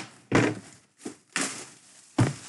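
Large cardboard jersey boxes being handled and set down on a table: a few thumps, about a second apart, with scuffing between them.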